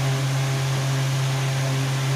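A steady low machine hum, unchanging, with a faint even hiss over it.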